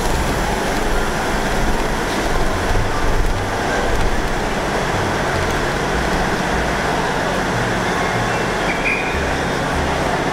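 Steady rumble and hum of diesel multiple-unit trains standing at a station platform, with general platform noise.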